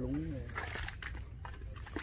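A short, faint call from a person's voice at the start, then a few faint knocks of a hoe working wet mud over a low, steady outdoor rumble.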